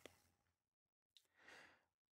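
Near silence, with a faint breath from the narrator about halfway through.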